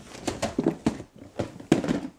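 A quick, irregular run of sharp clicks and knocks, about half a dozen in two seconds: someone handling and rummaging through small hard objects.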